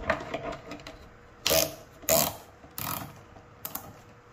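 Cordless drill run in four short bursts, turning the threaded lead-screw rod of a homemade plywood saw-lift mechanism.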